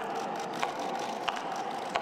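High-heeled footsteps on a catwalk, one sharp step about every two-thirds of a second, over a murmur of audience chatter.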